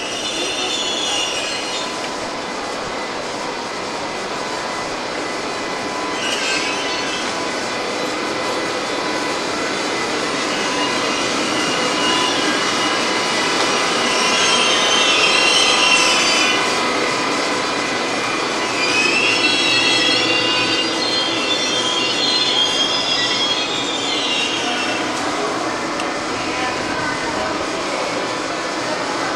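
Shunting move of InterCity coaches and a DB Class 101 electric locomotive rolling slowly through the station, with steady wheel-on-rail rumble. Repeated high-pitched flange squeal comes at the start, around six seconds in, and in longer stretches in the middle and latter part.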